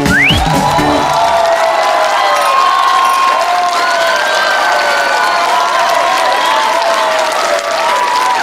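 The song's accompaniment ends about a second in, followed by a studio audience applauding and cheering, over high drawn-out tones that slide up and down.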